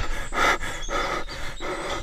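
Comic cartoon sound effect of quick breathy gasps, about four or five a second, voicing the little character's panting sobs.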